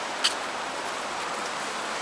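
Steady outdoor city-street background noise, an even hiss, with one short click about a quarter of a second in.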